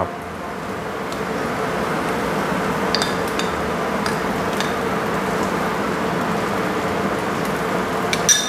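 Halved river prawns sizzling steadily over a charcoal grill as prawn tomalley is spooned onto them, with a few light clicks of a spoon against a bowl partway through.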